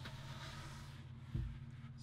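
Carpet-covered bed panel being slid and lifted across the van's cargo floor: a soft scraping, then one dull thump about one and a half seconds in as the board knocks against the frame, over a steady low hum.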